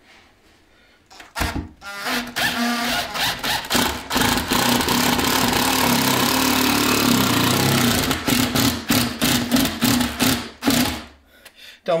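Cordless combi drill driving a wood screw into a pine batten while left in hammer (percussion) mode, so it rattles as it turns. Starts about a second in, runs steadily for several seconds, then goes in short bursts near the end as the screw is driven home.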